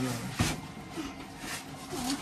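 Quiet small room with faint voice murmurs, the end of a hummed 'mm' at the very start, and one short sharp click about half a second in.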